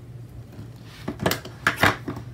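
Paper wall calendar being handled and slid across a desk: two short bursts of paper rustling and scraping in the second half.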